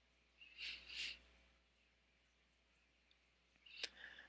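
Near silence, broken by two faint, short scratchy squeaks of a felt-tip Sharpie marker stroking across paper about half a second and one second in, and a faint click near the end.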